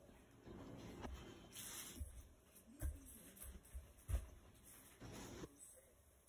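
Faint rustling with a few soft, low thumps, the loudest about three and four seconds in: the sound of someone moving about the room.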